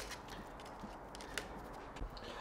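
A few faint clicks and crackles of fingers working a broken strand out of a woven wicker seat. The sharpest click comes right at the start.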